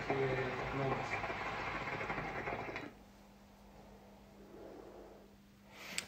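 Hookah water bubbling steadily for about three seconds as smoke is drawn through the base, then stopping abruptly. A faint breath follows about four and a half seconds in.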